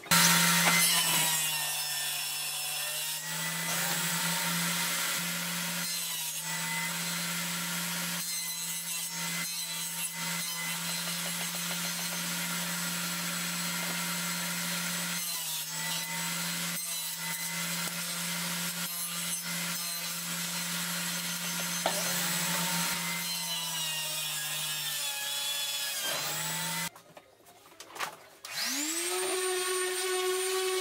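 Table saw running and ripping strips of laminate flooring, a steady motor hum under the cutting noise, with the pitch shifting briefly as each piece is fed in. Near the end it stops, and a random orbital sander starts up with a rising whine that settles to a steady pitch.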